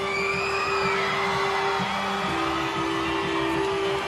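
Live band opening a song with long held notes that step to a new pitch a little past halfway, while a concert crowd whoops and cheers over it in the first couple of seconds.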